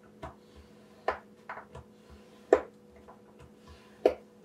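Paper scored with a stylus on a plastic scoring board, giving five or six short, sharp taps and scrapes at irregular intervals as the strip is shifted and each score line drawn.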